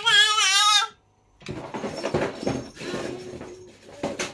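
A young child's high-pitched, wavering laugh that breaks off suddenly about a second in. After a short dropout comes a noisy stretch of rustling and light knocks from play.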